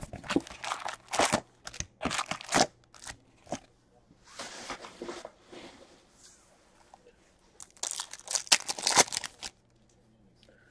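An Upper Deck hockey card box being opened and its foil card packs handled, in irregular bursts of crinkling and tearing. Near the end a foil pack is torn open and the cards are pulled out.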